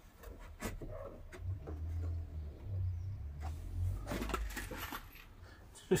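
Cordless drill running in short low-speed spells, driving screws into a timber frame, with knocks and a burst of clatter about four seconds in.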